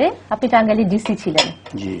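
A person speaking, with a few sharp clinks like dishes or cutlery; the sharpest comes about one and a half seconds in.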